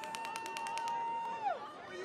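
A single long whistled note, steady in pitch for about a second and a half, then dropping away, with a fast run of faint sharp clicks over its first half.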